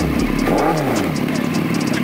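Suzuki Hayabusa's inline-four engine revved once by a twist of the throttle: the pitch climbs and falls back to idle within about a second, then idles.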